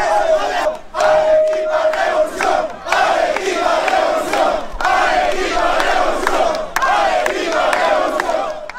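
A large crowd of rally-goers shouting and chanting together in rhythmic bursts about every two seconds, with a short steady tone about a second in.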